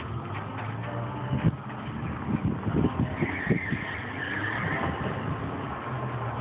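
A car engine running steadily, with a higher whine for about two seconds midway and a few short thumps.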